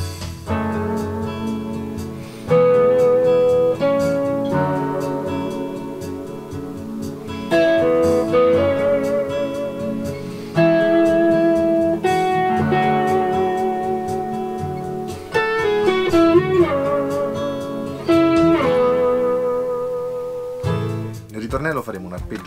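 Overdriven electric guitar: a Fender Stratocaster through a Fender Blues Junior amp with an EP Booster and a Tube Screamer TS808, playing a slow pre-chorus part. It is an ostinato on the second, third and fourth strings, with each note or chord held for two or three seconds, a wavering vibrato on several notes and a bend about two-thirds of the way through. It is picked up by the camera's microphone in the room.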